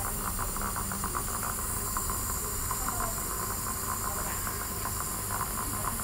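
Dental suction running with a steady hiss.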